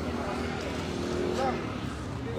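Indistinct voices of people some way off, over a steady low rumble with a faint engine-like hum.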